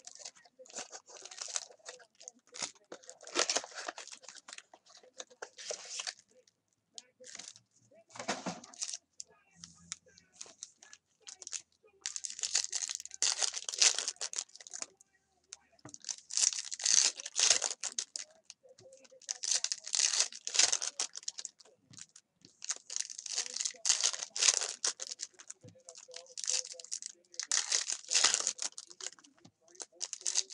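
Foil trading-card packs being torn open and crinkled by hand, in repeated bouts of tearing and rustling a second or two long.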